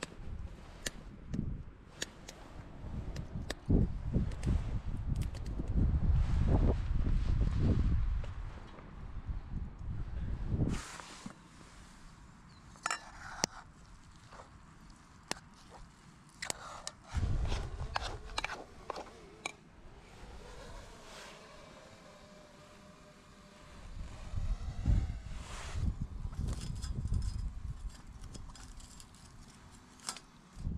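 Small camp wood stove and enamel pot being worked: scattered clicks and scrapes of a spoon stirring thick porridge and of sticks being fed to the stove. Low rumbling noise on the microphone comes in long stretches and is loudest from about four to eleven seconds in.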